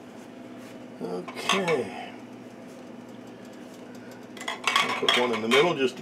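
Glass canning jars with metal lids clinking and knocking against each other and the aluminium pressure canner as they are set in, in two bursts: one about a second in and a longer one from about four and a half seconds. A steady low hum lies beneath.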